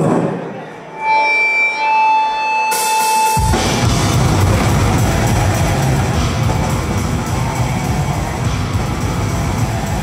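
Death metal band playing live. After a brief lull, a single high guitar tone is held for about two seconds. Cymbals come in, and then the full band, with drums and distorted guitars, starts a song about three and a half seconds in.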